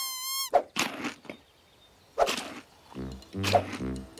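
A cartoon chick's short squawking calls, several of them about a second apart, following a gliding cartoon whistle effect that ends just after the start. Light background music with a bouncing bass line comes in about three seconds in.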